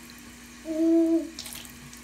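Water running faintly from a bathroom tap into the sink, with a short hummed "mm" of steady pitch a little after half a second in and a brief splash about a second and a half in.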